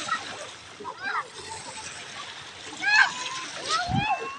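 Shallow sea water splashing and sloshing around children wading and playing. Two brief high-pitched children's calls come about a second in and again about three seconds in.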